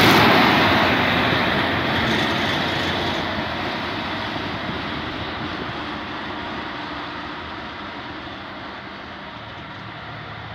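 A rail maintenance truck running past close by on the track: its noise is loudest at the start and fades steadily as it moves away down the line.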